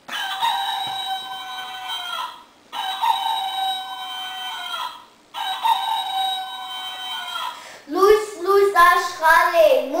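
A rooster crows three times. Each crow is long, lasts a little over two seconds, and falls in pitch at the end, with short pauses between them.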